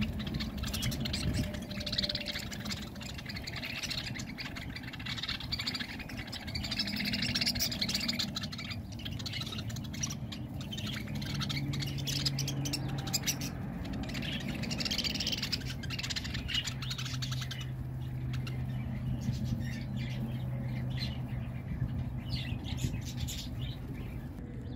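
A flock of budgerigars (parakeets) chattering and chirping continuously close to the microphone, with squawks mixed into the chatter.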